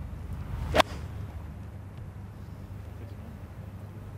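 A golf club's downswing swish leading into a single sharp crack as the clubface strikes the ball, about a second in, over a low, steady background hum.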